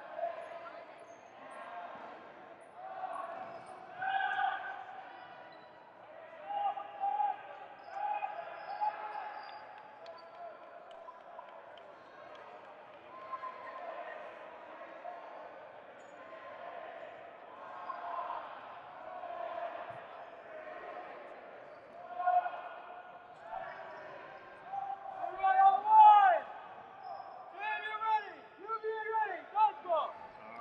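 Dodgeballs bouncing on a hardwood gym floor amid players' voices calling across a large echoing hall during the reset between points, with louder shouts about 25 to 29 seconds in as the next point gets under way.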